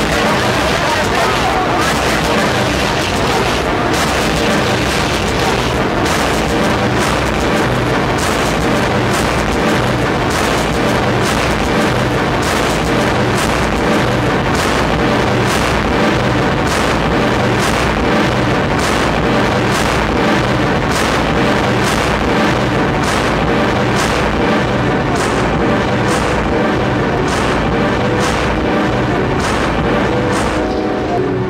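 Loud experimental electronic music played live from a laptop and keyboard: a dense, noisy wash over a deep booming low end. From about halfway through, a regular pulse of sharp hits comes in, roughly one a second.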